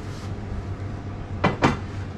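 Steady low hum, with two short sharp clicks about one and a half seconds in.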